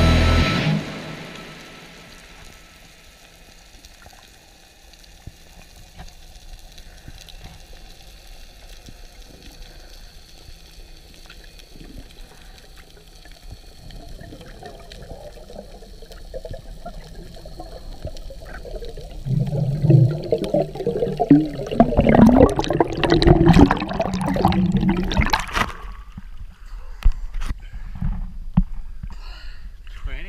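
Underwater water noise heard through the camera, with a song fading out at the very start. It turns into loud, irregular gurgling and bubbling from about twenty to twenty-six seconds in, then drops back down.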